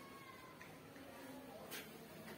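Faint wiping of a whiteboard with a hand-held duster: soft brushing strokes at the start and near the end, with thin faint squeaks in between.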